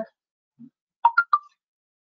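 A pause in speech, mostly silent, with three quick, short, pitched clicks about a second in.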